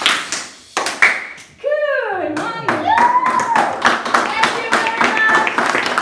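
A group of children clapping their hands on a wooden studio floor: a few single claps at first, then many hands clapping quickly and unevenly from about halfway in. Children's voices come through the clapping, one sliding down in pitch about two seconds in.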